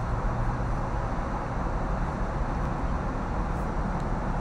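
Steady low background rumble with a faint low hum, unchanging throughout, with no clear events.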